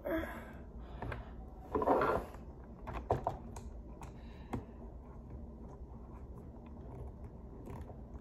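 Small clicks and scrapes of a plastic visor clip and screw being handled against a football helmet's facemask as a screwdriver is brought to the screw. A short, louder rustle comes about two seconds in, with a few more light clicks after it.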